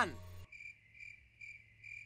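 Cricket chirping sound effect: short, evenly spaced chirps about twice a second, starting about half a second in. It is the cartoon gag for an awkward silence after a warning that draws no reaction.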